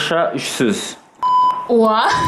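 A short, steady electronic beep a little over a second in, between bursts of chanted speech.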